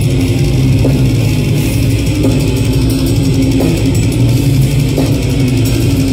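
Death metal band playing live: heavily distorted low guitars, bass and drums, loud and dense, in a slow heavy rhythm with a hit roughly every second and a half.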